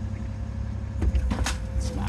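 Engine of a small cabbed lifting machine running steadily, heard from inside the cab. A few knocks and rattles come about a second in.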